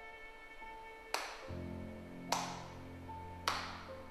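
Three slow hand claps, about a second apart, ringing briefly in a small bare room, over sad violin background music whose deeper chords come in between the first and second clap.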